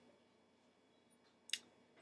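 Near silence: room tone, with one brief click about one and a half seconds in.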